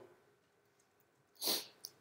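A pause in a man's talk, nearly silent for over a second, then a short, sharp breath in about one and a half seconds in, followed by a faint click just before he speaks again.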